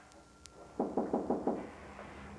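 Knocking on a wooden door: a quick run of about six raps, starting a little under a second in.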